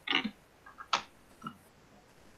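Two or three short snippets of voice over a video call's audio, the sharpest about a second in, then faint room tone.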